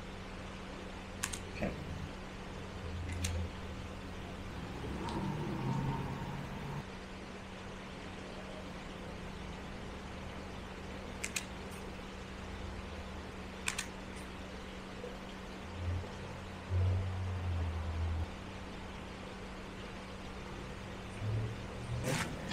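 Four short, sharp clicks, spread across several seconds, as thin antenna wire is snipped and handled, over a steady low hum.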